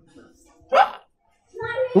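A man's voice gives one short exclamation, rising in pitch, a little under a second in. It is followed by a brief dead silence, and then a man starts speaking.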